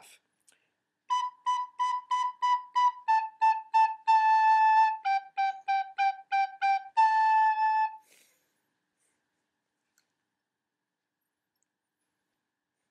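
Soprano recorder playing a slow melody of short tongued notes on three pitches, B, A and G (mi, re, do), stepping downward, with two longer held notes on A. The playing stops about eight seconds in.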